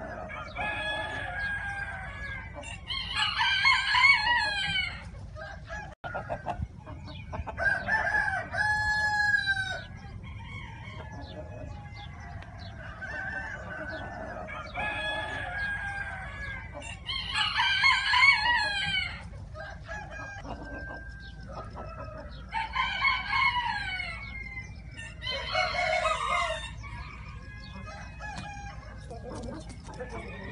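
Sumatra chickens: roosters crowing about five times, each crow a long pitched call, with softer clucking calls in between.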